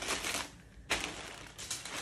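Thin plastic mailer bag crinkling and rustling under the hands as a packaged pair of jeans is pushed into it and pressed flat, starting up suddenly about a second in.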